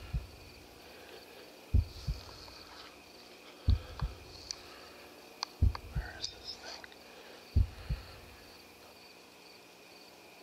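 Dull low thumps coming in pairs, five times, evenly about every two seconds, over steady night-time cricket chirping.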